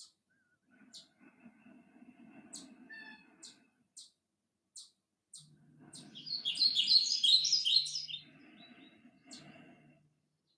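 A small bird chirping in short high calls about once a second, breaking into a loud burst of warbling song around six to eight seconds in.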